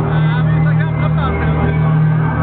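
Loud live electro music over a club sound system, dominated by a heavy, sustained bass, with voices mixed in over it.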